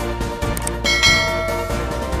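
A bell-chime sound effect rings once, starting about a second in and fading within about a second, over background music.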